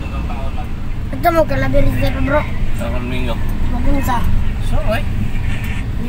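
Steady low rumble of a vehicle's engine and road noise, heard from inside the moving vehicle, with people's voices talking over it.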